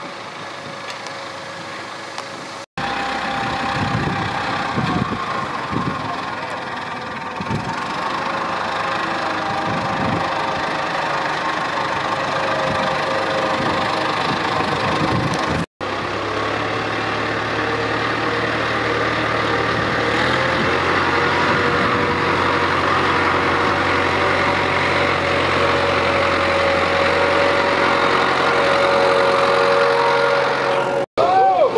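Farm tractor engine running while it tows a loaded flatbed trailer, with scattered knocks and clunks in the first half. After a sudden break about a third of the way through, the engine settles into a steady low drone. The sound cuts out abruptly twice.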